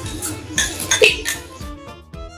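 A metal spoon clinking a few times against a small ceramic ramekin while gelatin is scooped from it. Music starts near the end.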